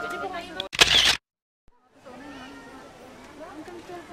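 Background music stops just after the start. It is followed by a loud, sudden half-second burst of noise, about a second of dead silence at an edit, and then a crowd of people chattering.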